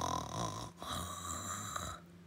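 A person imitating snoring with their voice: two rasping snores, the second starting just under a second in.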